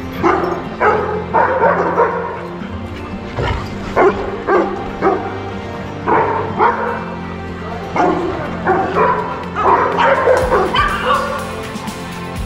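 Dogs barking in quick bursts of several barks at a time during rough play, with short pauses between bursts, over steady background music.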